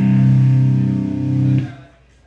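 Electric guitar and bass holding one sustained chord that rings steadily, then dies away and stops about a second and a half in.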